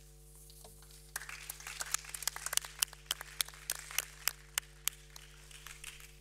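Scattered applause from an audience, separate claps starting about a second in and dying away near the end.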